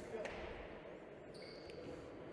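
Faint ambience of an indoor volleyball hall, a low even background noise, with a faint thin high tone in the second half.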